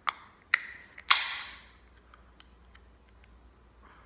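Cream soda can being opened: a few sharp clicks of the pull tab, the loudest about a second in with a short hiss of escaping fizz after it, then a few faint ticks.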